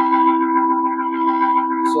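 Native Instruments Vintage Organs software organ on a jazz organ preset, holding one steady chord.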